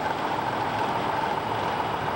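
Steady drone of stopped traffic with idling trucks, with a constant hum through it.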